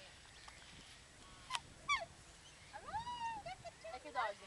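Waterfowl calling: a sharp single call about a second and a half in, a quick falling series of short calls just after, then a longer call that rises, holds and falls about three seconds in.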